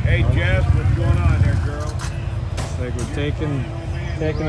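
Low steady rumble of side-by-side UTV engines running at low speed, with people talking over it.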